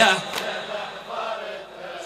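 Male reciter chanting a latmiya lament, his sung phrase ending just at the start and dying away, followed by a quieter stretch with faint voices.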